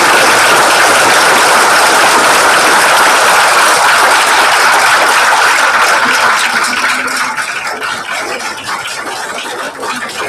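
An audience applauding, loud and dense at first, then thinning out and growing quieter from about six seconds in.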